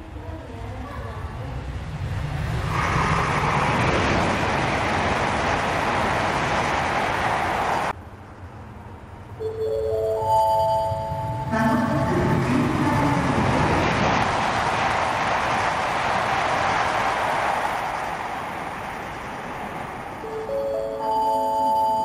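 N700 series Kyushu Shinkansen trains passing a station at high speed without stopping: a loud rushing of air and wheel noise that swells over a couple of seconds and holds, the first pass cut off abruptly. Between and after the passes, a short platform chime of tones stepping upward in pitch, which introduces the passing-train warning announcement.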